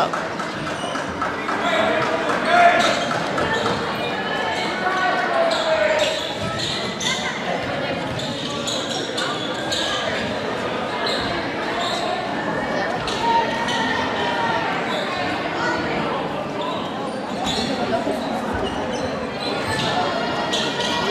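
Spectators' chatter echoing around a gymnasium, with scattered short knocks of a volleyball bouncing on the hardwood court between rallies.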